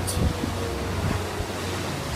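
Wind buffeting the microphone over the rush of the sea below, with a steady low hum underneath.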